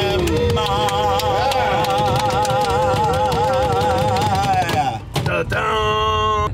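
A long sung note held for about four seconds with a wide, even vibrato over playing music, breaking off near the five-second mark, with a steady low rumble of the moving van underneath. After a short dip, another steady chord sounds near the end.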